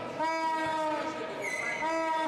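A voice singing or calling out long held notes, with a short, high-pitched squeak about one and a half seconds in.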